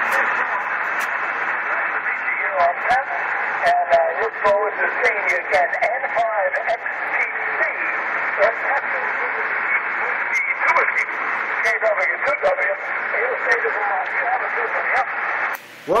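Weak single-sideband voice from a distant station on the 10-meter band, coming through an Icom HF transceiver's speaker and buried in steady hiss and crackling static, with the signal fading down into the noise. The hiss cuts off suddenly just before the end.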